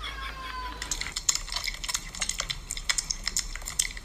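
A kitten's single short mew, falling slightly in pitch. From about a second in come quick, irregular clicks of kittens chewing chunks of raw meat.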